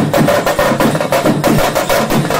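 Festival drumming: a slung side drum and other drums beaten in fast, driving strokes, several a second, with a steady tone running underneath.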